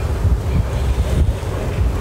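Wind buffeting a phone's microphone outdoors: a loud, steady low rumble.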